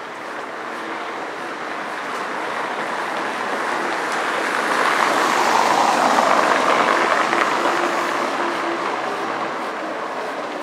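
A car passing from behind on a stone-paved street, its tyre noise swelling to a peak about halfway through and fading as it drives on ahead.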